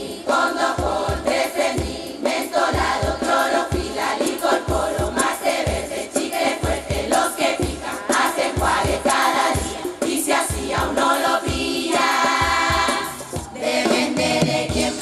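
A carnival murga chorus of women's voices singing together over a steady drum beat that thumps about two to three times a second. Near the end the chorus holds one long chord.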